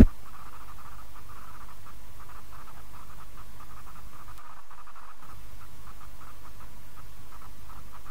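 Steady, faint background noise of the recording with a low hum, and no voice.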